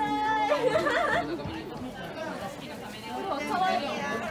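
Indistinct chatter of several people's voices, with a high-pitched voice loudest in the first second.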